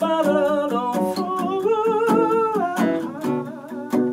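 A male voice singing a long, wavering melodic line without clear words, over a steadily strummed Takamine DSF46C acoustic guitar.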